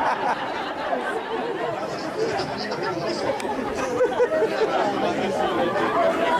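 Crowd chatter: many voices talking over one another, with no single clear speaker.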